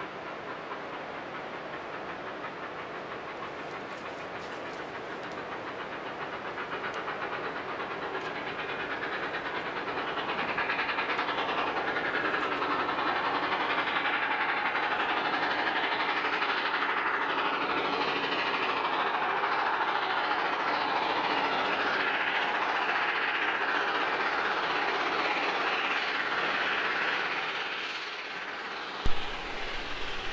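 Durango and Silverton narrow-gauge steam train running by along the track. Its noise grows louder about ten seconds in as it draws nearer, holds steady, then drops off shortly before the end.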